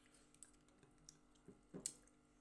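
A few faint, sharp clicks of metal spoons against glass bowls, a small cluster near the end, over near silence.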